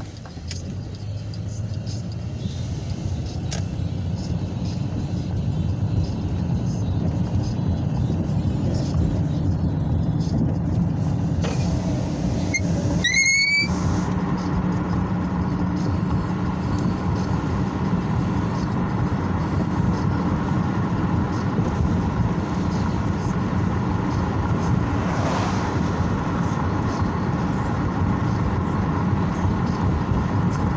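Road and engine noise heard from inside a moving car, building over the first few seconds as it picks up speed, then steady. A short, rising squeak comes about halfway through.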